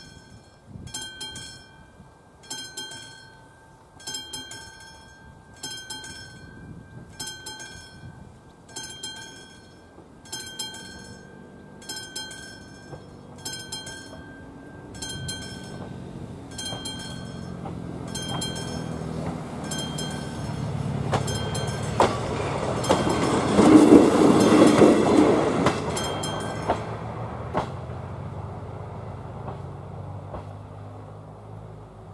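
Level-crossing warning bell ringing in steady strikes, about three every two seconds, while a Class 810 diesel railcar approaches. The railcar grows louder and passes over the crossing about 23 to 26 seconds in, and the bell stops soon after.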